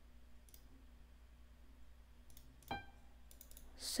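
A few faint computer mouse clicks, the clearest nearly three seconds in, over a low steady electrical hum.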